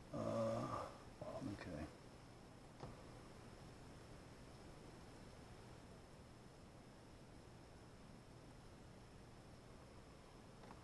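A man's brief wordless murmur twice in the first two seconds, a single faint click about three seconds in, then quiet room tone with a faint steady electrical hum.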